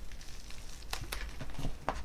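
Handling noise from a product packet: a few soft clicks and crinkles about a second in and again near the end, over a faint low hum.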